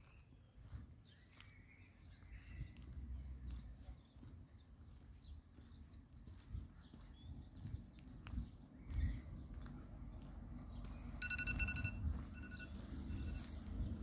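Faint footsteps on brick paving over a low rumble. Near the end comes a brief run of high pips, all at the same pitch.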